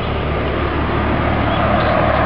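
Steady low hum of a car engine idling under a broad wash of traffic-like noise, which grows a little louder in the second half.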